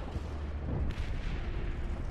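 Battle sound effects: a steady deep rumble with gunfire-like cracks, the sharpest about a second in.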